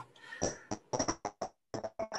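Choppy video-call audio: a string of short clicks and bursts, several a second, cut off abruptly into dead silence between them, as a weak connection drops in and out.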